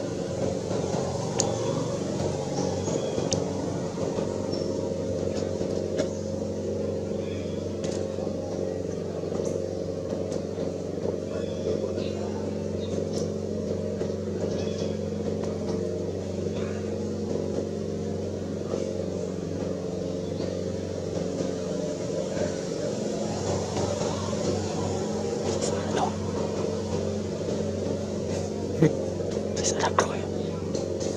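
A steady low mechanical hum, like a motor running, with people's voices in the background.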